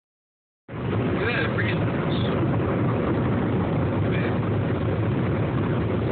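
Steady road and engine noise inside a moving car's cabin, with a low hum, starting abruptly just under a second in.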